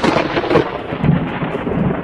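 Comedic spit-take sound effect: a sudden spluttering 'pff' spray of hiss that trails on and cuts off abruptly.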